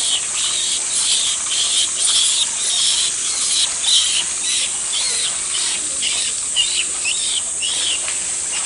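A baby monkey gives a string of short, high-pitched calls, about one or two a second, some rising and falling in pitch, over a steady hiss.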